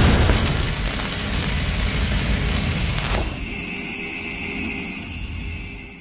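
Logo-sting sound effect: a loud boom at the start trailing into a low rumbling whoosh, a second swoosh about three seconds in, then a steady held tone that fades out near the end.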